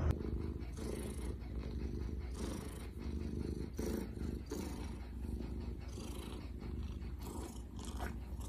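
A tabby cat purring, a low rumble that swells and eases with its breathing, about once a second.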